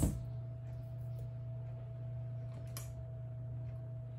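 Paper wrapper being peeled off a stick of butter, giving a few faint crinkles and ticks, the clearest a little before three seconds in. Under it runs a steady low hum with a thin faint tone above it.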